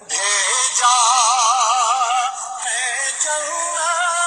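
A sung Urdu naat (devotional song in praise of the Kaaba): one voice holding long notes with a wide vibrato, pausing briefly past the middle before starting the next phrase.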